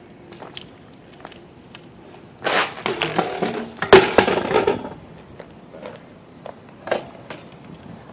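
BMX bike crashing onto concrete as the rider bails: about two seconds of clattering and scraping starting a couple of seconds in, with the hardest hit about a second later.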